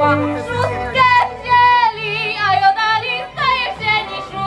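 Highland folk music: singing with vibrato over a pulsing bass accompaniment.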